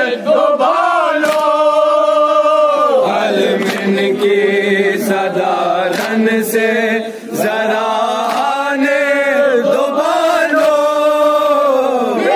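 Men chanting a noha, a Shia mourning lament, together in long held, sliding lines. Sharp slaps from chest-beating (matam) come at irregular intervals through the chant.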